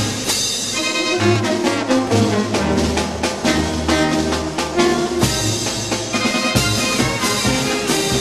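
Brass band playing a marinera norteña, with trumpets and trombones over a driving percussive beat and low bass notes.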